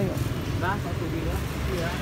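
Street background: a steady low vehicle rumble, with a brief faint voice a little over half a second in.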